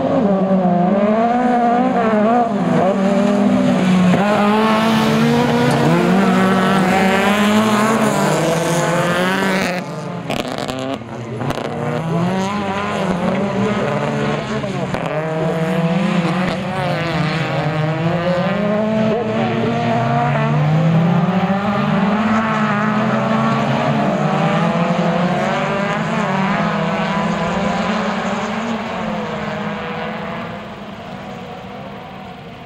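Several autocross race cars running hard on a dirt track, their engines revving up and falling back in pitch over and over as they race, with a brief drop in loudness about ten seconds in.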